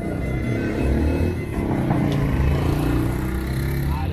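A motor vehicle, most likely a motorcycle, passing close by, its engine pitch rising and falling and loudest around the middle, with music playing underneath.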